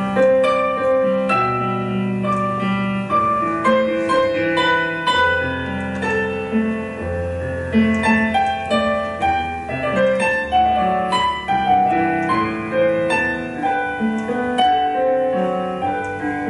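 Piano playing a hymn tune in chords, a melody over a slow-moving bass line.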